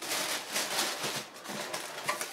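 Tissue paper in a cardboard shoebox rustling and crinkling as hands pull it open. It starts suddenly and comes in uneven surges.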